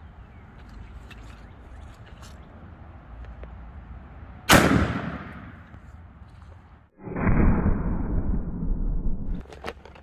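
A single 12-gauge shotgun shot about four and a half seconds in, firing a Duplex Kaviar frangible slug (birdshot bonded in polymer) into a lead plate, with a ringing echo that dies away over about two seconds. A few seconds of muffled rumbling noise follow near the end.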